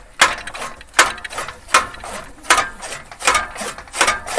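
Hand-cranked flywheel chaff cutter chopping green fodder: a sharp chop about every three-quarters of a second as the blades pass, with the mechanism clattering between cuts.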